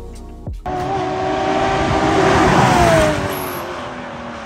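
A Porsche sports car driving at speed on a track: its engine note and tyre noise build, peak, and then drop in pitch as it goes past. Background music stops about half a second in.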